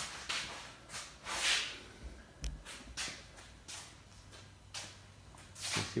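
Handling noise of a handheld phone camera being moved in for a close-up: soft rustling swishes and small knocks, with a low bump about two and a half seconds in.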